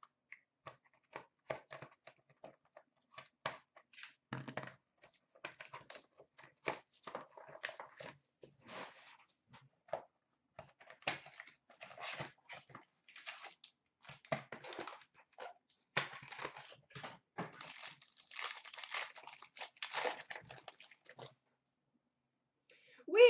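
Trading card packs being torn open and their wrappers crinkled, with cards handled: faint scattered crackles at first, growing into denser rustling and crinkling in the second half.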